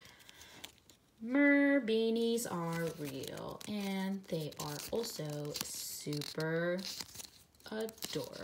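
Pages of a small paper sticker book being flipped and handled, rustling and crinkling. From about a second in, a quiet woman's voice sounds in short pitched phrases over the rustling.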